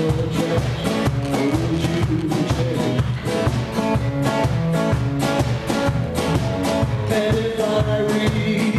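Live band music: a man singing over strummed acoustic guitars and a drum kit keeping a steady beat.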